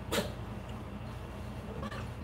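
A house cat gives one short meow just after the start, over a low steady hum.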